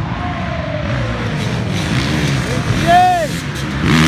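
Dirt-bike engines revving on and off the throttle as the bikes come closer through the woods, loudest near the end as they arrive.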